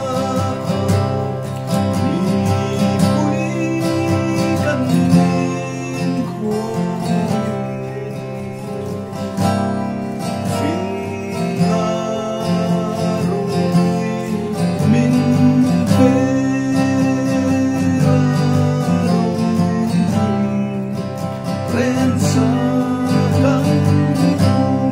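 A man singing a song to his own strummed acoustic guitar accompaniment.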